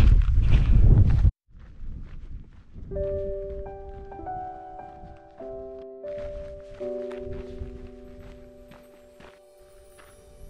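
Wind buffeting the microphone for about the first second, then cutting off suddenly. Soft piano background music starts about three seconds in, with faint footsteps on a dirt path beneath it.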